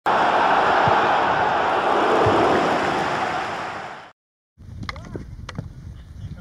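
A loud rushing noise, the sound effect of an animated logo intro, starts abruptly and fades out after about four seconds. A brief silence follows, then quieter outdoor field sound with a couple of sharp knocks.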